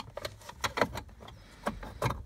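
Several short plastic clicks and rustles, irregularly spaced, as a small wiring module and its cables are pushed up behind a plastic under-dash panel.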